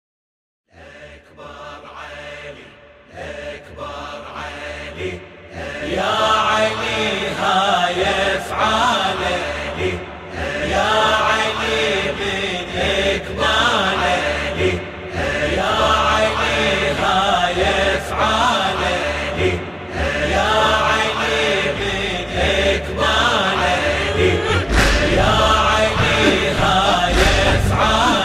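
Layered chanting voices opening a Shia latmiya (devotional lament). They fade in from silence, build up to full strength over the first several seconds, and a deep bass pulse joins near the end.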